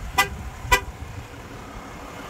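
Two short vehicle horn chirps, about half a second apart, over a steady low outdoor background.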